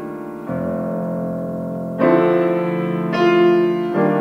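Solo grand piano playing a slow, lyrical piece: held chords, with new chords struck about half a second, two seconds and three seconds in, each ringing on and slowly fading.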